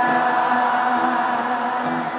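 Live band music with singing from many voices together, held notes and no drum beat, slowly fading.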